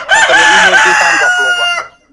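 A rooster crowing once, loud, for nearly two seconds, ending in a long held note that stops sharply.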